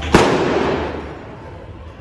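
A single loud explosive bang, its echo dying away over about a second.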